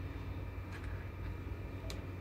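A steel ladle stirring thick curry in a steel pot on a gas stove, with two faint light clicks, over a steady low hum.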